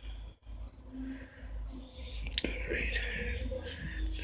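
A man whispering or murmuring quietly over a steady low rumble of the phone being handled, with a single sharp click about halfway through.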